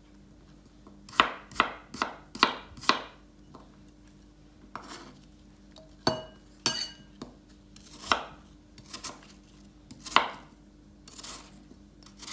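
Kitchen knife chopping a peeled apple on a wooden cutting board: a quick run of five sharp knocks, then slower, scattered cuts.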